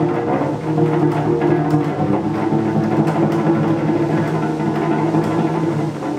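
Solo cello played live, its right-hand fingers plucking the strings so that low notes ring on over one another.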